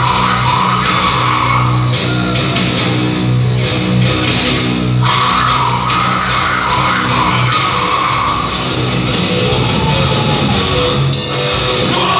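Heavy metal band playing live, with distorted electric guitar, bass and drum kit, heard from among the audience.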